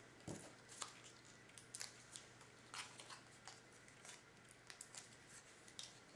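Faint, scattered rustles and light ticks of hands handling small cardstock hinge tabs.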